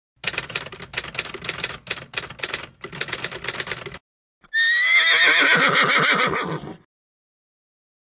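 Rapid, irregular clicking for about four seconds, then, after a short gap, a loud, high-pitched quavering animal call lasting about two seconds.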